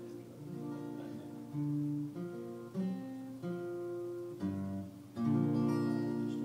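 Acoustic guitar playing a slow introduction, strummed chords changing every second or so, with a louder strum about five seconds in.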